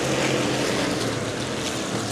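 A pack of V8 street stock race cars running together at the start of a race: a steady, dense engine roar from the whole field.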